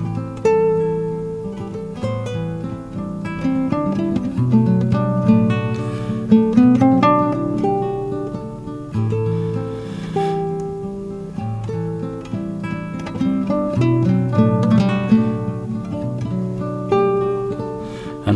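Nylon-string classical guitar played fingerstyle in an improvisation: plucked melody notes ringing over low bass notes that recur every few seconds.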